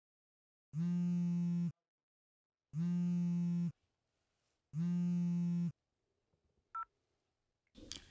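A phone ringing with a low buzzing tone in even pulses, three one-second buzzes a second apart, then a short high beep as the call is answered.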